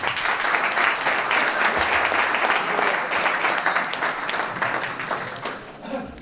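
Audience applauding after a talk: dense clapping that is fullest for the first few seconds, then tapers off near the end.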